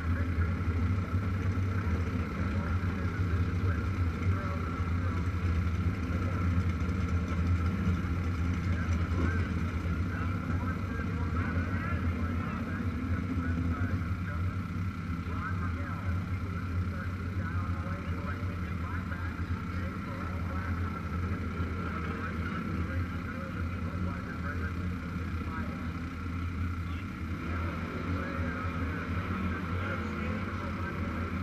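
Motorcycle engine idling steadily, a low, even hum, with indistinct voices in the background.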